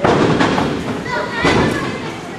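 Dull thumps of wrestlers' bodies hitting each other and the ring, three within about two seconds, over raised voices.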